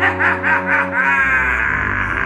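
A man's exaggerated evil-villain laugh: quick rhythmic 'ha-ha' pulses, then drawn out into one long held note for the second half.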